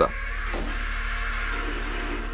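Electric drive motors of a PackBot tracked robot whirring steadily, over a low steady hum.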